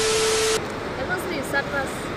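A loud burst of TV-static hiss with a steady beep tone, lasting about half a second and cutting off suddenly: the glitch sound effect of a subscribe-button transition. After it comes a lower background with faint voices.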